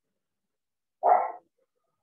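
A single short dog bark about a second in.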